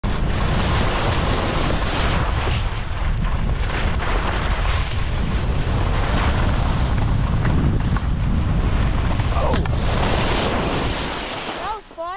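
Wind buffeting the microphone and skis running over chopped-up snow as a skier moves steadily downhill. The rushing is loud and continuous, then dies down about a second before the end as the skier slows to a stop.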